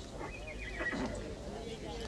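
A horse neighing in the background: one wavering high call lasting about a second, over a steady low rumble of ambience.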